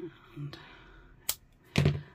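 A single sharp snip of scissors, then a louder clack as the metal scissors are put down on a cutting mat near the end.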